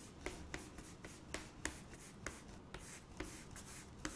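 Chalk rubbing on a chalkboard in quick back-and-forth shading strokes, about four or five strokes a second, quiet.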